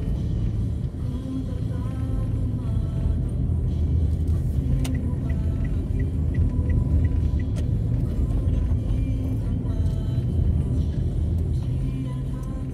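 Low, steady rumble of engine and road noise from a vehicle moving slowly through city traffic, with faint music or voices behind it. Near the middle comes a run of short, evenly spaced high beeps, about three a second.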